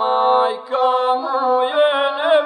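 Gusle, the single-string bowed folk fiddle, playing a wavering, nasal melodic line in a stretch of an epic song, with a brief break just under a second in.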